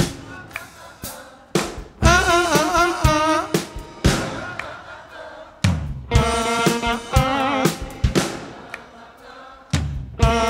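Live roots-rock band in a call-and-response passage: short sung phrases over electric guitar and drum hits, about two seconds in and again near six seconds, each phrase stopping and ringing away into a pause.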